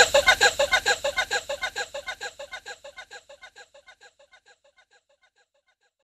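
Electronic music ending on a short sampled sound repeated rapidly through an echo, about seven repeats a second, each a brief pitched blip, dying away over about five seconds.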